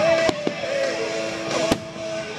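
Aerial fireworks shells bursting in several sharp bangs, the loudest right at the start and near the end, over loud music.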